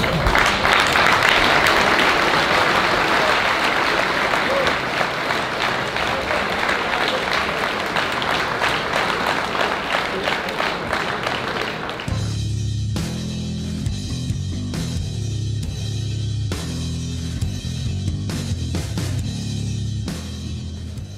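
Arena crowd cheering and applauding loudly as the referee stops the fight. About twelve seconds in, loud music with a heavy bass and drum beat takes over.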